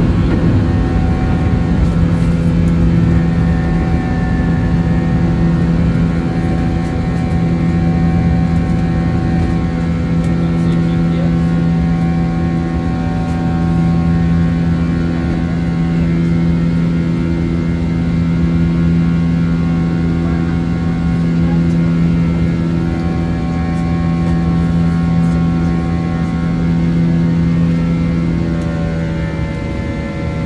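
Airbus A321 jet engines at takeoff and climb power, heard from inside the passenger cabin: a loud, steady drone with a deep hum and several steady whining tones. Near the end the level drops slightly and the tones shift in pitch.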